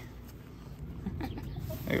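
French bulldog licking and chewing at a meat patty treat held out to it by hand: quiet, uneven eating sounds from the dog.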